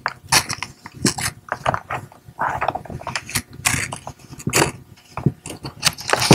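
Scissors cutting through wrapping paper: a series of crisp snips and rustling slides as the blades work along the sheet.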